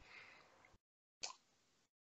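Near silence, with one faint short click a little over a second in.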